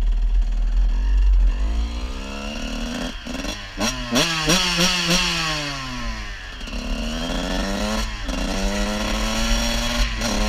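Suzuki RM125 two-stroke single-cylinder dirt bike engine under way, its pitch rising and falling as the throttle is opened and rolled off, then settling into a steady, higher run near the end. Wind rumbles on the helmet microphone in the first second or so.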